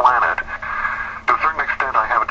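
Only speech: a person talking on a radio show, with no other sound.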